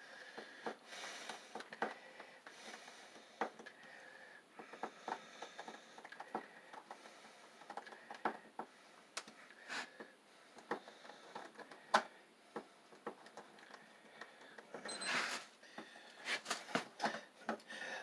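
Scattered light clicks and scrapes of a screwdriver working at a three-gang wall light-switch plate, with one sharper click about twelve seconds in and a brief rustle around fifteen seconds in.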